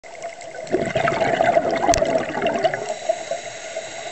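Scuba regulator exhaust bubbles heard underwater: a loud rush of exhaled bubbles lasting about two seconds, with a single sharp click near its end, then a quieter spell.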